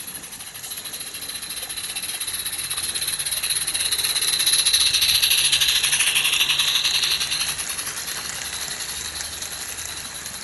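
A garden-railway model locomotive and a long train of small wooden slate wagons rolling past on the track, with a fast, fine rattle of wheels on rail. It grows louder to a peak about five seconds in as the engine passes close by, then fades as the wagons roll on.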